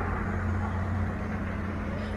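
Steady road traffic noise with a low hum, from cars on the road alongside.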